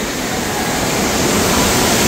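Steady rush of water at the foot of a tube water slide, pouring and splashing into its run-out pool, slowly getting a little louder.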